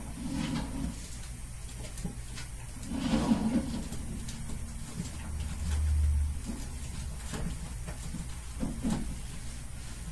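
Scattered knocks, clicks and scrapes of a glass reptile tank and its lid being handled and opened, with a low rumble about six seconds in.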